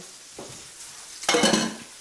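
Lamb shanks searing in a hot pan, sizzling steadily, with one short louder noise about a second and a half in.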